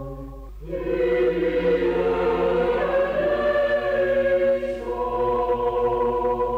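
Choir singing a Greek Orthodox liturgical setting in sustained chords. A held chord fades about half a second in, a fuller chord with higher voices enters, and near the end it settles back to a lower chord.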